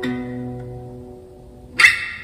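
Steel-string acoustic guitar played fingerstyle: low notes ring and slowly fade, then near the end a sudden, bright percussive hit on the strings is the loudest sound.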